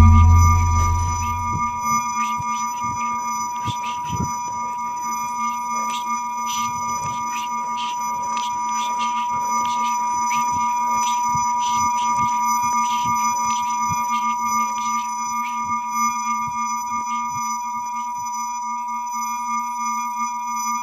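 An electronic soundtrack tone: a steady, high-pitched whine with a steady lower hum beneath it and scattered crackling clicks, opening on the fading tail of a deep boom.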